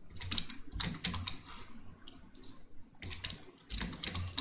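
Computer keyboard being typed in short runs of key clicks with brief pauses between them, as HTML tags are entered in a code editor.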